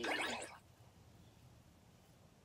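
The last half second of a narrator's word ends, then near silence: faint room hiss during a pause in the audiobook.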